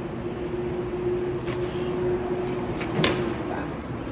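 A kitchen knife cutting down through a stack of thin bologna slices on crinkly paper, with a few short crisp cuts and rustles and one sharper tap about three seconds in. A steady hum runs underneath.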